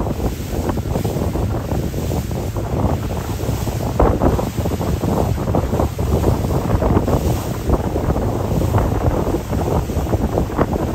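Wind buffeting the microphone in uneven gusts, with the wash of waves underneath.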